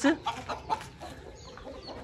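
Aseel chickens clucking faintly, with a short sharp knock a little over half a second in.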